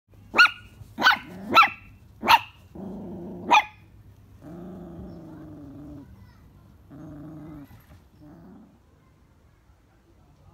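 Small Chihuahua-type puppy barking at a cat: five sharp, high yaps in the first few seconds, then low growling in several drawn-out stretches that fade out near the end.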